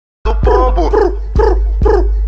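A dog barking repeatedly, about four barks roughly half a second apart, over a steady low rumble.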